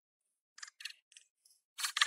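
Stones clicking and scraping against each other as a block is set into a dry-stone wall: a few short, sparse clicks, then a quicker run of louder clacks near the end.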